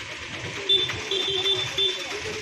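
Outdoor crowd ambience with indistinct chatter and a steady background hiss. Midway through comes a high-pitched electronic beeping, broken into three short pulses over about a second.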